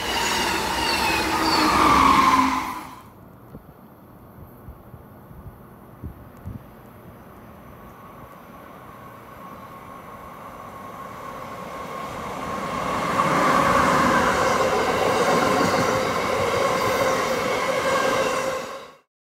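Amtrak passenger trains on the Northeast Corridor: one running close by for the first few seconds, then, after a cut, a train led by an electric locomotive approaching along the station platform. Its rumble builds steadily as it nears and stays loud as the passenger cars roll past.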